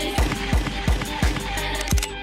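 Background music with a steady kick-drum beat, about three beats a second.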